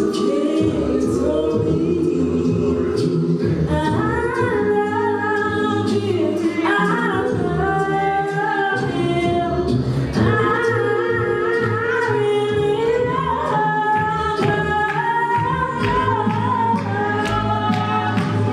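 Unaccompanied gospel singing: a young woman's amplified lead voice sings over a choir of voices. From about four seconds in, her higher melodic line moves above the sustained voices of the group.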